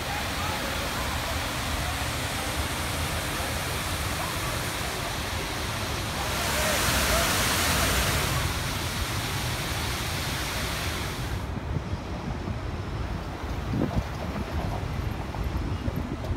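Water splashing down a stepped cascade fountain as a steady rush, loudest about halfway through. It stops a few seconds before the end, leaving quieter street background.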